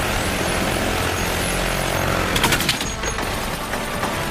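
Helicopter running with a steady low rumble amid dense battle noise. A short burst of rapid gunfire comes about two and a half seconds in.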